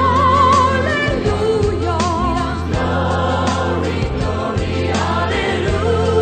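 Choir singing sacred music over a steady low sustained accompaniment, with a voice holding notes with wide vibrato above it.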